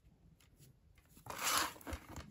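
Plastic DVD case being handled after a second of near silence: a short rustling scrape starts about a second in and is followed by a few faint clicks.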